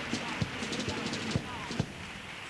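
Carnival comparsa percussion: a bass drum (bombo) keeping a steady beat about twice a second, with lighter, sharper drum taps between the strokes.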